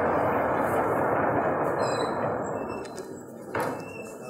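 Lecture-hall audience applauding by knocking on their desks, many dense raps together, dying away after about three seconds.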